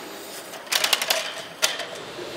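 Metal food-transport carrier rolling by gravity along the tubular metal rail of a loop track, giving a quick run of rattling clicks about two-thirds of a second in and one more click near the end.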